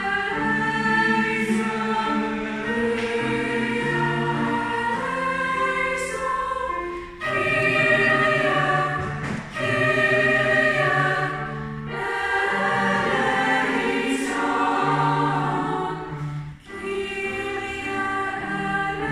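Youth choir rehearsing, singing in several parts with long held notes. The singing breaks briefly, as for breath, about seven, nine and a half and sixteen and a half seconds in.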